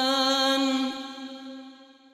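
A male Quran reciter's voice holding one long, steady note in melodic tajweed recitation, drawing out the end of a verse and fading away near the end.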